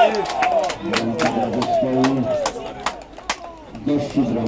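Several men's voices shouting over one another on a football pitch, with a few sharp claps in between, in reaction to a goal just scored.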